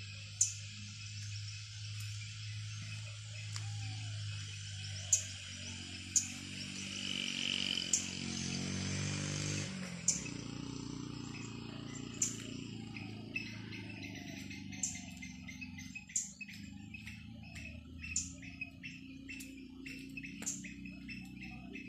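Outdoor ambience of birds and insects: sharp chirps every second or two, and in the second half a quick run of repeated chirps, about three a second. A low steady hum runs underneath and grows fuller in the middle.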